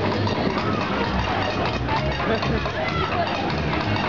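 Loud funfair ride din: voices calling out over a steady thumping music beat from the ride's sound system.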